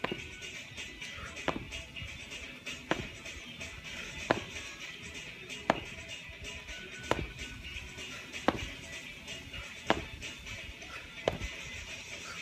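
Background music with a sharp hit about every second and a half.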